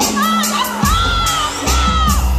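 Audience screaming and cheering, with high-pitched shouts rising and falling, over loud music from PA speakers. The music's bass drops out at the start and comes back about a second and a half in.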